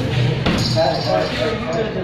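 Men's voices talking, with a single sharp knock about half a second in.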